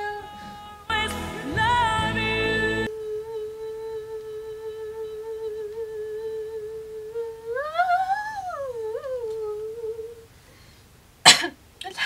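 A woman's unaccompanied voice holds one long note, roughened by a head cold. The note swells up in pitch and sinks back about eight seconds in, then fades out. A single sharp knock follows near the end.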